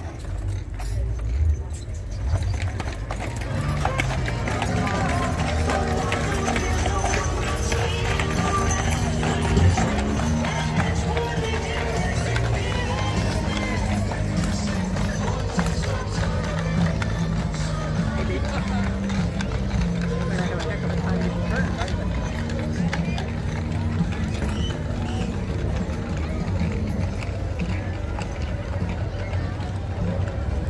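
Hooves of a team of Clydesdale draft horses clip-clopping on asphalt as the team pulls a wagon past, mixed with crowd voices and music.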